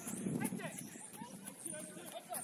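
Distant shouting and calling voices of footballers and spectators across an outdoor pitch during play.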